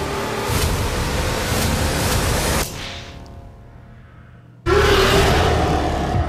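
Film-trailer soundtrack: dense, loud action music and sound effects with a beat about once a second. It cuts out abruptly about two and a half seconds in, then a loud hit with a held low tone lands about a second before the end.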